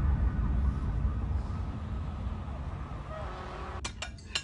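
City traffic ambience: a deep rumble of traffic that slowly fades, with a siren wailing faintly in the distance. A short sharp clink comes near the end.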